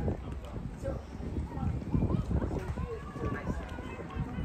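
Indistinct voices of people talking, with wind rumbling on the microphone.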